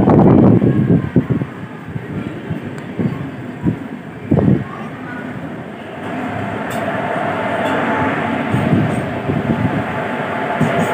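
A locomotive-hauled passenger train passing close by on the adjacent track. From about six seconds in there is a steady rush and rumble of the locomotive and coaches going past. Before it there are a few brief knocks.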